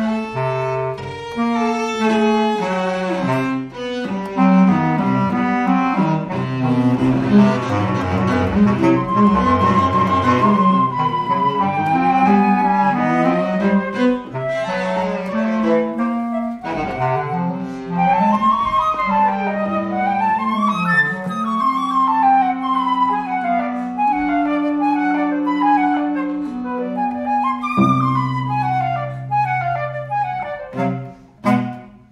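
Flute, bass clarinet and cello playing contemporary chamber music live: fast, densely interlocking lines, with a held high note about ten seconds in and long low sustained notes near the end.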